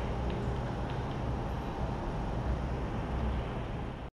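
Steady low background rumble with a faint hiss and no clear beep, cut off suddenly at the end.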